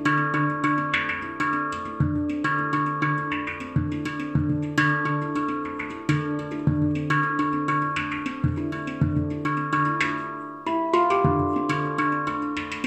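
Steel handpan played by hand in a steady rhythmic groove: quick finger strikes on its tone fields ring out in overlapping notes over a repeating low bass note. Near the end, higher notes come in.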